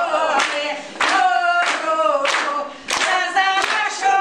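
Women's village folk group singing a Polesian wedding song in loud, open-throated unaccompanied voices, with hand claps sounding along several times.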